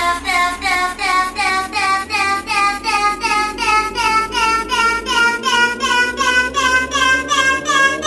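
Electronic dance-music build-up from a DJ remix: a high, chopped vocal repeats about three times a second over a slowly rising sweep, with the bass pulled out. At the very end the full track comes back in.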